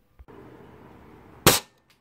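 A single sharp bang like a gunshot about one and a half seconds in, over a faint steady hiss.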